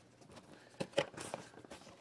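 Cardboard box flaps and a paper manual being handled: light rustling with a few short clicks, the sharpest about a second in.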